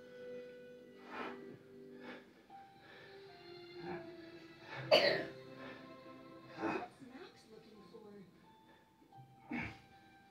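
A man's sharp, forceful exhalations as he does push-ups, a burst every couple of seconds, the loudest about halfway through. Music and voices from a children's TV show play quietly in the background.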